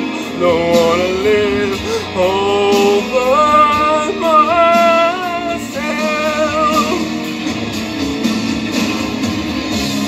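A man singing over a karaoke backing track, holding long, wavering notes. The voice tails off about seven seconds in, leaving the backing track.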